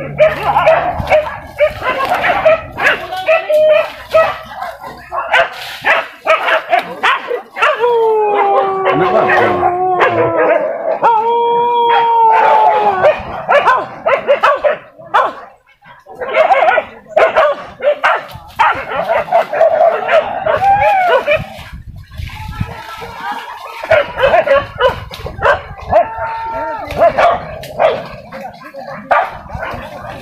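A pack of boar-hunting dogs barking and yelping in quick, overlapping barks, with a few long drawn-out cries about eight to thirteen seconds in.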